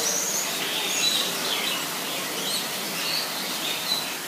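Many small chirps and tweets from birds in a tropical greenhouse, overlapping one another, over a steady rushing background.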